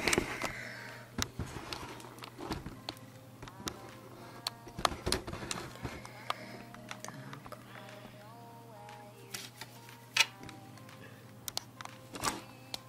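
Scattered light clicks and taps from handling a cross-stitch embroidery frame and needle, over a steady low hum and faint background music.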